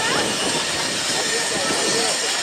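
Railway station ambience: many distant voices chattering from a crowded platform over a steady hiss of train and station noise.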